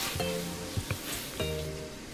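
Light background music with two short pitched notes, over a faint swishing of a craft stick stirring glitter into a glue-and-shaving-cream fluffy slime base.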